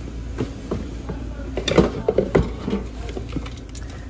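Hands rummaging through a plastic bin of mixed household items, with objects knocking and clattering against each other and the bin. The knocks come loudest and thickest about two seconds in.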